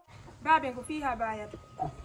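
A high-pitched voice making a few short vocal sounds whose pitch falls and wavers, starting about half a second in.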